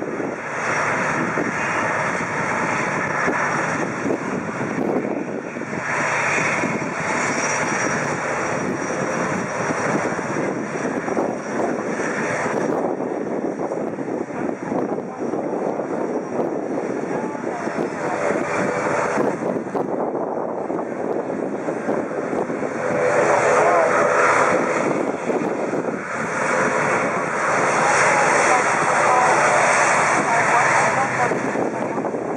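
ATR 72-500's twin Pratt & Whitney PW127 turboprop engines running at taxi power: a steady propeller-and-turbine drone that grows louder over the last few seconds as the aircraft turns toward the microphone.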